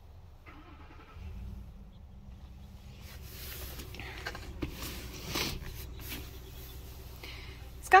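Low, steady rumble of a motor vehicle engine that swells about a second in, with rustling and light knocks of handling in the middle.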